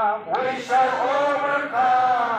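A group of voices singing or chanting together in unison, with long held notes and a brief break about a third of a second in.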